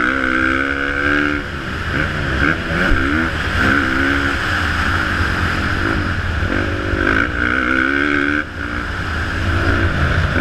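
Motocross bike engine under hard throttle. The revs climb at the start and again about seven seconds in, with a sharp drop in pitch about eight and a half seconds in.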